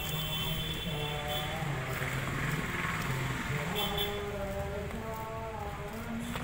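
A person's voice with pitch that bends and holds, over steady outdoor background noise.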